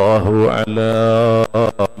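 A man preaching in a drawn-out, sing-song intonation, holding long steady syllables, then breaking into short clipped syllables with brief pauses near the end.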